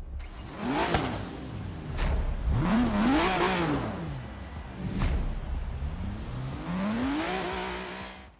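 A car engine revving in several rising and falling sweeps, with sharp whoosh-like hits between them.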